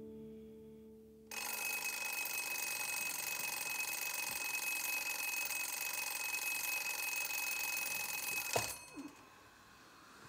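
An alarm clock ringing loudly and steadily, starting suddenly after a soft piano ending fades. It cuts off abruptly with a knock as it is switched off near the end.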